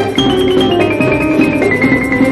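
1950s light-orchestra recording with piano, a high melody stepping down in held notes over a busy rhythmic accompaniment.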